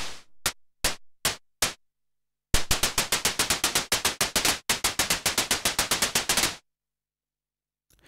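Korg monologue analogue synthesizer playing a snare/cymbal patch built from VCO2's noise with a short decay envelope, its attack sharpened by a one-shot sawtooth LFO on the filter cutoff. It plays four single hits first, then two rapid runs of hits.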